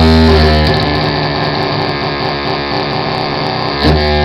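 Live noise-music performance: a loud, dense drone of distorted amplified noise with a steady hum. About a second in, the heavy low drone drops away, leaving a thinner, wavering buzz. Near the end the full drone surges back in.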